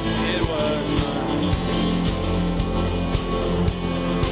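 Live worship band playing a song: held bass notes, keys and guitar over a steady kick-drum beat about twice a second, with a voice singing the melody.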